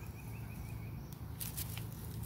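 Quiet outdoor background: a steady low hum with a faint wavering tone during the first second, then light clicks and rustling in the second half.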